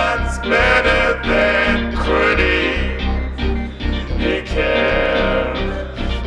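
Man singing into a handheld microphone over an electronic backing with a steady bass. The sung phrases come in short lines about a second apart.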